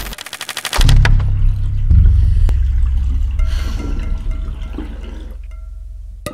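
Logo-intro sound design: a noisy whoosh with rapid clicking in the first second, then a deep low boom that swells again about two seconds in and slowly fades, with faint pinging tones over it.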